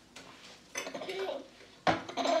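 Bowls clacking against high-chair trays as babies handle them, with one sharp knock near the end, and a short baby vocal sound in the middle.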